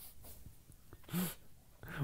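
A man's short, stifled laugh: one brief breathy chuckle about a second in, otherwise only faint room noise.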